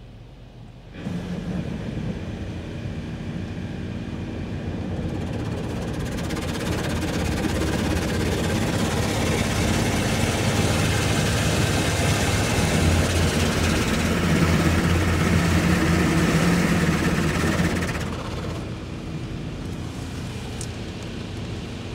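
Automatic soft-touch car wash machinery heard from inside the car: a loud rushing hiss over a low motor hum that starts suddenly about a second in, builds, and drops off near the end.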